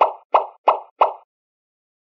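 A cartoon pop sound effect played four times in quick succession, about three a second, each one short and alike. It is dubbed in to mark Play-Doh logs popping into place in a stop-motion edit.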